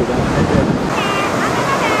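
Ocean surf washing onto a sandy beach, with wind rushing over the microphone. A faint high voice calls out about a second in and again near the end.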